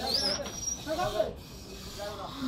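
Men's voices calling out to each other, with a short high whistle near the start that rises and then holds for under a second, over a steady faint background hiss.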